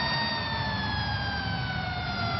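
Hockey arena crowd noise with a steady high, siren-like tone that slowly falls in pitch through it.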